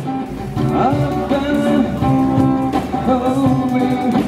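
Live busking duo: a man singing into a microphone over strummed acoustic guitar, with a cajón keeping time.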